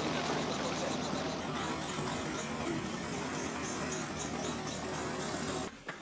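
An engine running steadily, a constant hum under a wash of noise, cutting off abruptly near the end.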